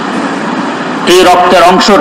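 A man's voice, preaching into microphones, starts about a second in. It is drawn out and wavers in pitch, after a short stretch of hiss.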